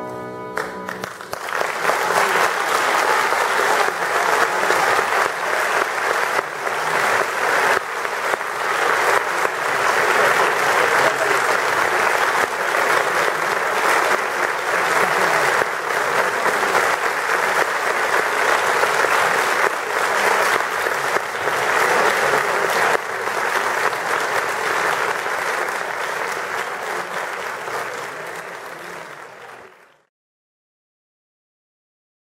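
Audience applauding in a theatre. It starts about a second in as the final piano and cello chord dies away, holds steady, and fades out near the end.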